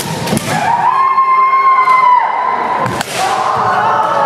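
Kendo player's kiai: a high shout that rises in pitch and is held steady for about a second and a half, followed by a sharp impact about three seconds in, over gym crowd noise.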